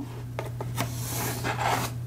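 Pencil scratching across a manila file folder as it traces around the edge of a book cover, a continuous dry rasp that grows stronger about halfway through.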